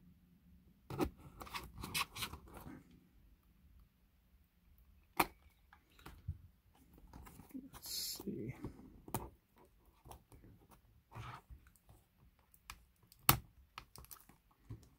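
A retractable utility knife slitting the shrink wrap on a cardboard trading-card box, then the plastic wrap crackling and tearing as it is peeled off, with scattered sharp clicks.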